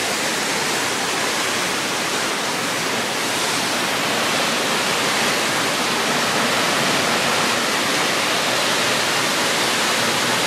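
Triberg Waterfalls cascading down rock steps: a steady rush of falling water that grows a little louder about three and a half seconds in.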